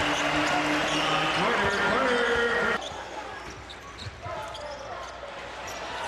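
Basketball arena crowd noise with many voices for almost three seconds, then an abrupt drop to quieter court sound with a few scattered basketball bounces.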